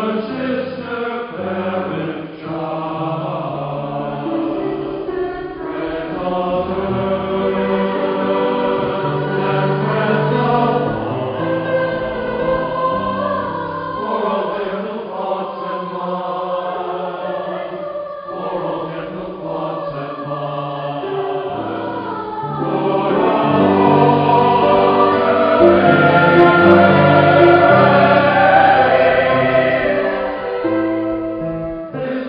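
Choir singing in a church service, with sustained, changing chords, swelling louder over the last several seconds.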